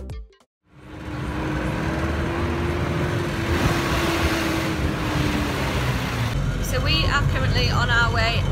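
Road traffic on a city street with a vehicle engine's steady drone, followed by the engine rumble inside a moving minibus, with a woman starting to talk near the end.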